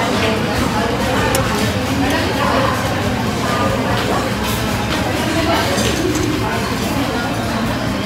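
Metal spoon and fork clinking now and then against a ceramic bowl as a fried pempek is cut, over the steady chatter of a crowded eatery.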